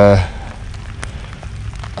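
Heavy rain falling, with scattered drops ticking close to the microphone.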